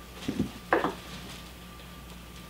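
Power cord and plug being handled while being plugged into an outlet: two brief clattering knocks in the first second, then only a faint steady hum.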